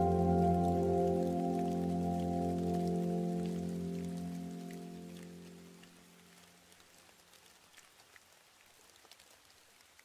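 A soft, held musical chord fading out over about six seconds, with a light rain sound pattering underneath; after the chord dies away only faint rain ticks remain.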